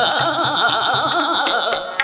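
Kirtan singing: a male voice holds a long note with a wavering, ornamented pitch over sustained harmonium, with a few soft tabla strokes. The held sound drops away just before the end.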